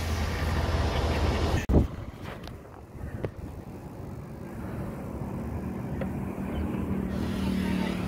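Wind rushing over the microphone and tyre and road noise from a bicycle riding along. It drops off abruptly about two seconds in, with a few light clicks, then slowly builds again as a low steady hum grows near the end.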